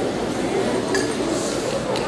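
Many people talking at once in a hall, a steady crowd murmur, with a light metallic clink about a second in.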